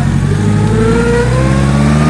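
1929 Peugeot 201's four-cylinder side-valve engine, heard from inside the cabin, pulling and rising steadily in pitch as the car accelerates.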